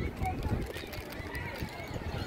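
People talking nearby in the stands, several voices overlapping, with a few low thumps and some rumble.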